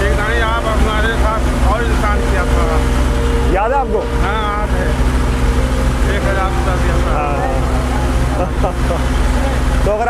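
A man talking, in a language the speech recogniser did not write down, over a steady low rumble of street traffic and wind on the microphone.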